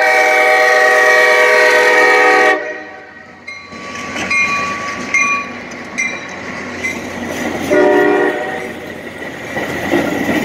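A Metra commuter train's locomotive horn sounds one long chord that cuts off about two and a half seconds in, then a second short blast near eight seconds, as the train passes the crossing. Between the blasts a bell dings repeatedly, and near the end the locomotive and cars rumble and clack past.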